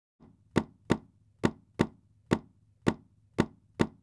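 A sound effect of eight sharp knocks, about two a second, each short and dry over a faint low hum.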